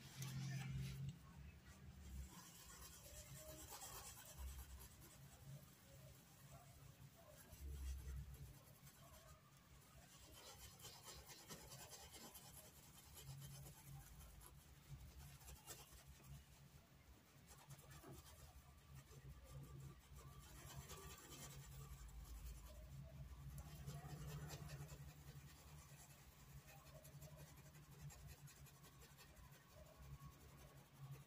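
Faint, scratchy rubbing of a paintbrush being worked over cloth, blending fabric paint, rising and falling with the strokes.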